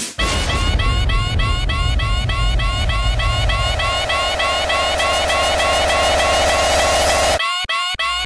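Uptempo hardcore electronic music, in a build-up section: a fast repeating synth figure, about five notes a second, over a held synth tone that slowly rises and a heavy distorted bass. Near the end the track cuts out abruptly, then comes back in short chopped hits.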